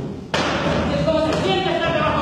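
A heavy stage box thuds onto the stage floor about a third of a second in, and steady pitched tones that step between notes follow right after.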